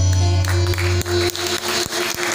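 Live Hindustani devotional music with tabla and harmonium drawing to a close: a low held note drops away a little past a second in, and a run of sharp, irregular percussive strikes follows over a higher sustained note.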